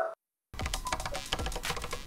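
Computer keyboard typing: a quick, irregular run of key clicks starting about half a second in, after a brief dead silence.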